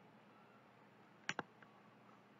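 A computer mouse button clicked, with a quick pair of sharp clicks (press and release) about a second and a half in, over faint hiss.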